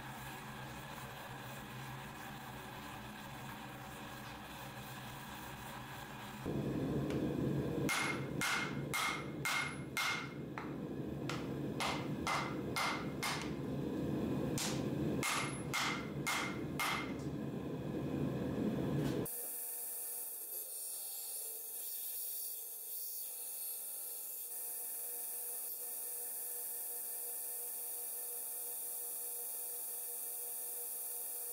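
A steady forge noise gives way to hammer blows on a glowing steel billet on the anvil: two quick runs of about five ringing strikes each, forge-welding fluxed surface cracks to smash them flush. After a sudden cut about two-thirds of the way in, only a faint steady hum and hiss remain.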